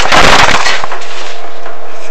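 A loud burst of scraping and crackling from the chimney inspection camera rig as it is moved through the flue, strongest in the first half-second and followed by scattered clicks over a faint steady hum.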